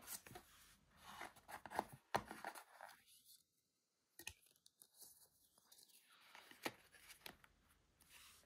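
Faint handling noises of paper and cardboard packaging being put back into a box: light rustles and taps with a few sharper clicks, broken by a brief dead-quiet gap midway.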